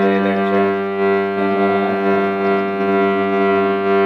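Harmonium playing, its reeds holding a sustained chord of steady notes, with a note changing about halfway through.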